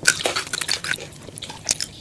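Close-up crunchy biting and chewing of crispy seasoned french fries. It is a quick, dense run of crisp crackles for the first second, then a couple more crunches near the end. The sound is sped up in fast-forward playback.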